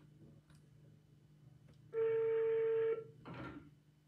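Phone ringback tone heard over speakerphone: one steady beep of about a second, about halfway through, the sign that the call is ringing at the other end and not yet answered. A short rustle follows just after it.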